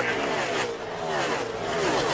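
NASCAR Cup Series stock cars' V8 engines running flat out past the camera, several cars one after another, each engine note falling in pitch as it goes by.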